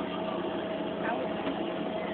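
Amusement ride machinery running: a steady mechanical hum with a constant thin whine.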